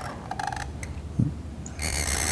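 Reed pen (qalam) scratching across paper as ink strokes are drawn, in short scratchy bursts with a small click just after a second in.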